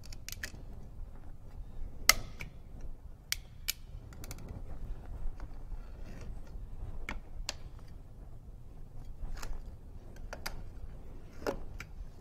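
Oil filter cutter's pointed cutting wheel scoring the steel canister of a spin-on oil filter as the canister is turned round by hand: quiet scraping with scattered sharp metallic clicks every second or two.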